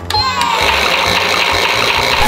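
A toy washing machine's button clicks, then the machine starts up with a steady whirring rattle, as if the drum is spinning.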